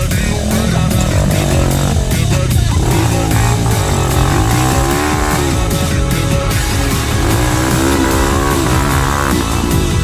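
A dirt bike's engine revving up and down in repeated surges as it climbs over rocks, mixed with background music.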